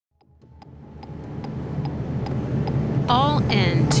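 Metronome click track from in-ear monitor tracks, ticking about two and a half times a second over a steady low hum, fading up from silence. Near the end a voice begins counting in.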